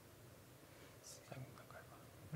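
Near silence: room tone in a lecture hall, with a faint, quiet voice speaking briefly a little past a second in.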